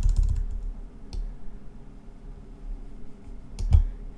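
Clicks from a computer mouse and keyboard: a quick run of clicks at the start, a single click about a second in, and a few more clicks with a dull thump near the end.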